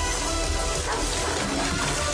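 Film soundtrack playing: a music score over a steady rushing noise with a low rumble underneath.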